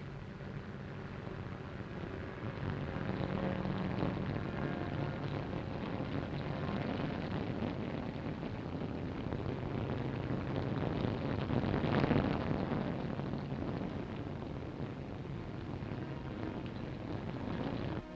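Military vehicle engine running with a steady rumble over the hiss of an old film soundtrack, swelling louder about twelve seconds in.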